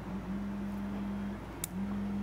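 Anycubic Photon D2 DLP resin 3D printer running mid-print: a quiet, low, steady hum that drops out briefly about one and a half seconds in and comes back after a faint click. There is no fan noise.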